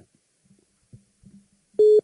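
A pause in a man's French-language speech: near silence with a few faint low blips, then near the end a loud, flat, held 'eh' in his voice.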